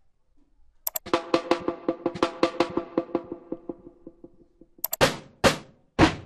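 Amapiano drum-roll samples played back one after another. After about a second of quiet, a roll of pitched drum hits comes at about four to five a second and fades away over some three seconds. Near the end a second roll starts with louder, wider-spaced hits.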